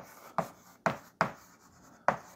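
Chalk writing on a blackboard: about five short strokes as a word is written.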